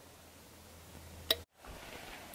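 Quiet room tone in a small room with a faint low hum, and a single sharp click a little past a second in. It then drops out briefly to silence at an edit.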